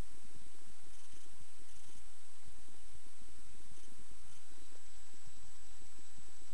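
Cessna 172S's Lycoming IO-360 four-cylinder engine running at taxi power: a steady low rumble under an even hiss.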